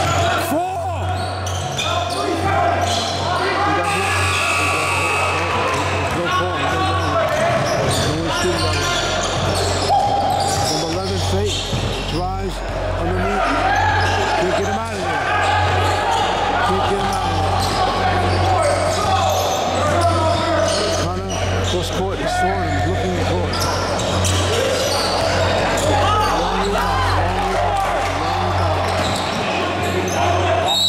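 Basketball dribbling and bouncing on a hardwood gym floor during live play, with players' shouts and spectators' voices ringing in a large hall.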